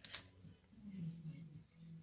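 A single sharp click as the RC truck's power switch is flipped off, followed by a faint, low, steady hum.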